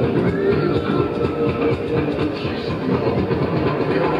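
A fairground thrill ride running at speed: continuous loud rumbling and rattling machinery with a steady hum underneath.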